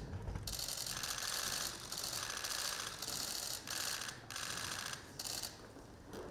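Press cameras' shutters firing in rapid bursts, several runs of fast clicks with short breaks between them.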